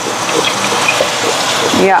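Raw ground beef sizzling in hot oil in a stainless steel pan as it is pushed around with a wooden spoon: a steady sizzle with faint crackles.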